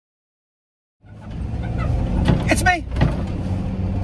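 Silence for about a second, then the steady low drone of a moving van's engine and road noise heard from inside the cab, with brief bits of voice.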